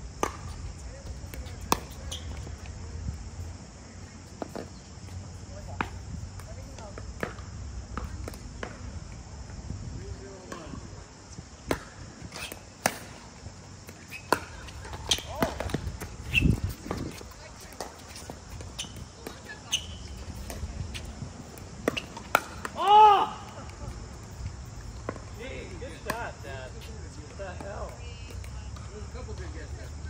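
Pickleball rally: paddles striking a hard plastic pickleball with sharp pops, at irregular intervals, along with the ball bouncing on the court. A loud shouted exclamation comes about two-thirds of the way through, and faint voices follow.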